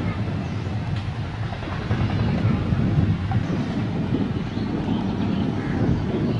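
Low rumble of a train, swelling about two seconds in and holding steady.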